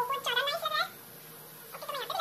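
A woman's voice sped up by fast-motion editing, high-pitched and chattering, in two short stretches with a pause of about a second between them.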